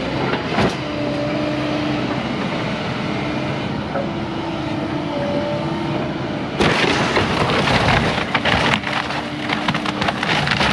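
Hyundai hydraulic excavator running, its engine and hydraulics making a whine that shifts in pitch as the grapple works, with a knock about half a second in. From about six and a half seconds in comes loud crashing and splintering of wood framing as the grapple pulls a standing section of the wrecked house down.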